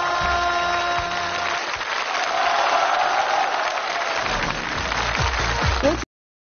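The last held notes of a song on stage give way, about a second and a half in, to audience applause, which then stops abruptly at the end.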